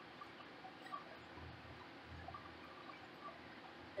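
Very faint strokes of a small paint roller rolling paint onto the fridge's metal side panel, with a couple of small ticks.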